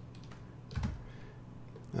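A few computer keyboard keystrokes, the loudest just under a second in, over a faint steady low hum.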